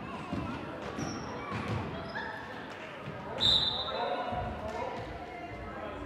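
Basketball dribbling on a hardwood gym floor, a thud every half second or so, under indistinct voices echoing in the hall. Short sneaker squeaks come in, and a brief high-pitched squeal a little past halfway is the loudest sound.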